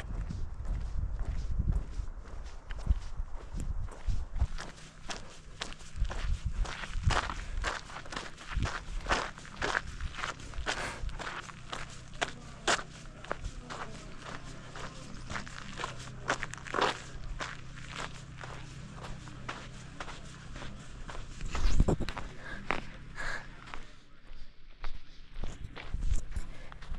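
Footsteps of a walking hiker, a steady run of crunches and clicks about one to two a second on road and dirt, with a faint low steady hum through the middle.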